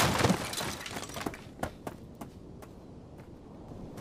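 Something shattering: a sudden crash at the start that fades over about a second, followed by a scatter of small sharp clinks, like fragments falling and settling, over the next two seconds.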